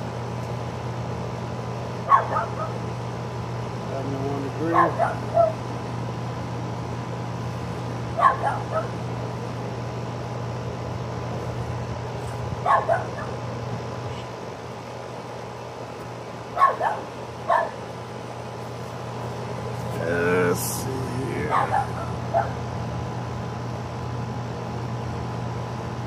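Outdoor air-conditioning condenser unit running with a steady electrical hum. A dog barks once or twice every few seconds over it.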